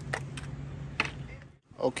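Two light plastic clicks, about a second apart, from a motor-oil bottle and its cap being handled, over a steady low hum; the sound drops out briefly near the end.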